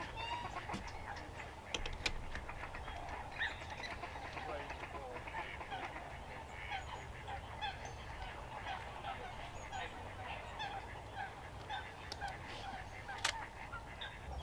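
A dense chorus of many wetland birds calling together, an unbroken stream of short overlapping calls, with a few sharp clicks scattered through it.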